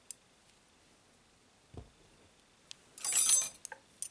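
Knitting needles clinking together in a short, bright metallic clink about three seconds in. Before it come a soft knock and a faint tick.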